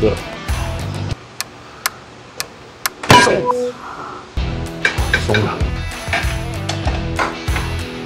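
Background music with a steady beat that drops out for a few seconds. In the gap come a few sharp metallic ticks about half a second apart, then a loud clank of metal with a brief ring. These are the hand wrenches working on the car's front suspension bolts.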